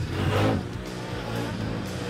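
Can-Am Outlander 1000 6x6 ATV's V-twin engine revving hard, rising in pitch in the first half second, then running on, over background music.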